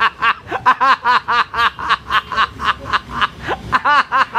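A man laughing: an unbroken run of short snickering pulses, about four a second, each rising and falling in pitch.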